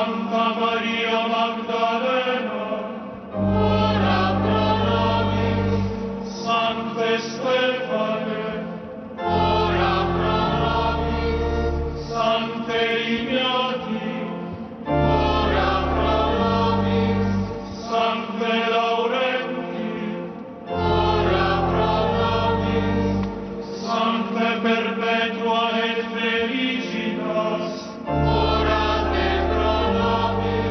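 A choir singing liturgical music in phrases of about six seconds, with steady low sustained notes held beneath each phrase.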